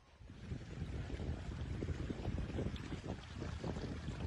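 Wind buffeting a phone's microphone outdoors: a low, gusty rush that swells about half a second in and then stays steady.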